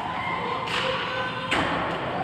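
Two sharp knocks from ice hockey play, the puck and sticks striking the ice and boards, over steady rink background noise.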